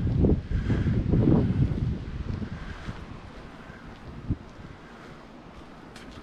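Wind buffeting a handheld microphone outdoors, a low rumble strongest in the first two seconds that then fades to a quiet hiss, with one short click a little after four seconds.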